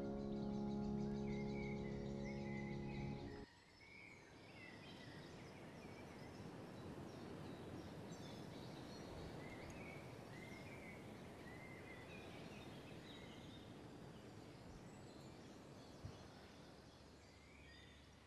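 A held chord on a Steinway concert grand piano rings on, then cuts off suddenly about three and a half seconds in. Faint outdoor ambience follows, with birds chirping now and then.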